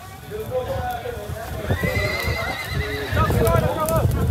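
A horse whinnies once, starting about two seconds in: a quavering call of about a second, over a murmur of voices.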